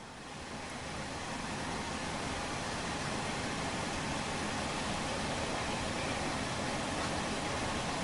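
Steady, even background hiss with no distinct events. It grows louder over the first couple of seconds and then holds level.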